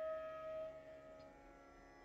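Faint background music: a single held note that fades out within the first second, then near silence.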